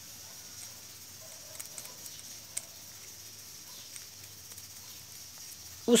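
Faint, occasional small metallic clicks of a spring washer being turned against the splined drive hub of a CAV rotary diesel injection pump in the hands, with one sharper tick about two and a half seconds in, over a steady faint high hiss.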